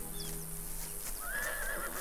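A faint, wavering animal call lasting under a second, starting a little past a second in, with a brief high chirp just before it.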